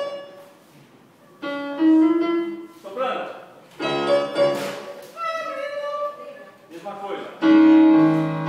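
Electronic keyboard in a piano voice playing a melody in short phrases with brief pauses between them, the third phrase near the end the loudest.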